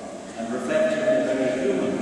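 A man's voice, slow and drawn-out.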